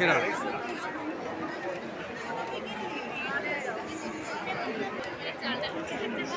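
Crowd chatter: many people talking at once at a fairly steady level.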